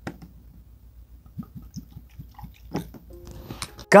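Whisky glugging from a nearly full bottle as it is poured into a stemmed tasting glass: a quick run of soft gurgles, about five a second, through the middle. A voice and music start right at the end.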